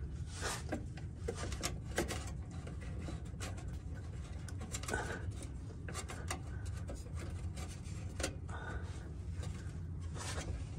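Scattered light clicks and rubbing as a diesel fuel filter canister is handled and worked loose by hand, over a steady low background rumble.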